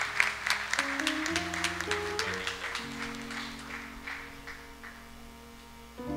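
A congregation clapping, the applause thinning and dying away by about five seconds in, over soft sustained instrumental chords that shift in pitch a few times.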